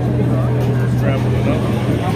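Busy city street: the steady low hum of a nearby vehicle engine running, under scattered voices of passers-by.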